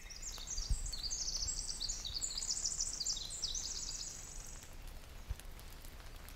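A songbird singing a long, rapid run of high, thin chirping notes that trails off about three-quarters of the way through, over a faint outdoor background.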